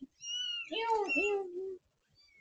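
Newborn kitten, eyes still closed, crying: a short high thin squeal, then a longer wavering mew that bends up and down before stopping just before the end.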